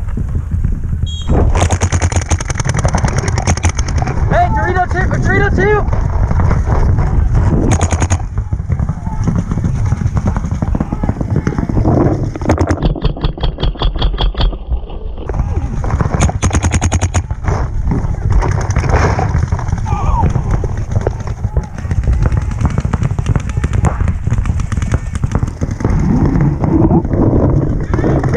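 Paintball markers firing long, rapid strings of pops, with a very even burst partway through, while players shout across the field.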